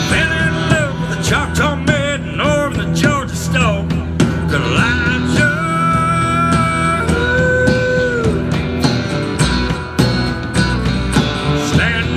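Live country band playing an instrumental break: a lead guitar with bent, wavering notes and a few long held notes over strummed acoustic guitar, bass and drums.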